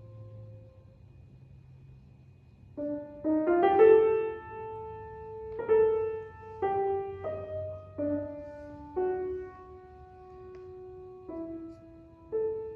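Solo grand piano playing a slow, sparse miniature. A held note fades, then about three seconds in comes a quick flurry of notes, followed by single notes and chords struck roughly once a second, each left to ring out.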